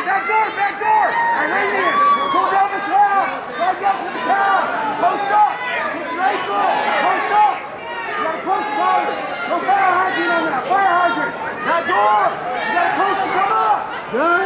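Many voices shouting over one another without a break: fight crowd and corner men yelling at the grappling fighters.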